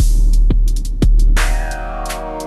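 Synced electronic drum pattern from a Korg Volca Drum: deep kick drums that drop sharply in pitch, about two a second, over a heavy bass with short hi-hat ticks. About one and a half seconds in, a held synth chord from the Arturia MicroFreak comes in.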